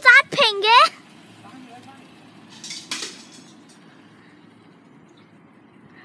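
A child's high, drawn-out vocal exclamation, rising and falling in pitch, in the first second. A low background follows, with a brief rush of noise about three seconds in.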